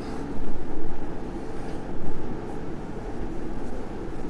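A steady low background rumble, with louder scraping strokes about half a second in and again at two seconds as a marker draws vertical lines on a whiteboard.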